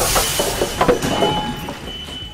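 Film sound of a passenger train derailing after being dynamited: a loud, noisy clatter with sharp knocks, then a steady high-pitched squeal from about halfway through.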